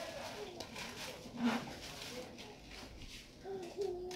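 Faint voices in the background, over light rustling of grosgrain ribbon being handled and hand-sewn.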